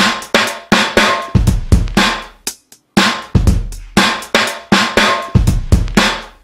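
Native Instruments Drum Lab sampled drum kit (Raw kit, Dead/Dry setting) playing a groove loop at 120 bpm: kick, snare and hi-hats in a steady rock pattern. The groove drops out for a moment about three seconds in, then carries on.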